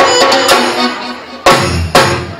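Live Afghan attan dance music: hand drums playing over a held melody line. The drumming thins out for about a second, then a loud, deep drum stroke lands about one and a half seconds in, with another just before the end.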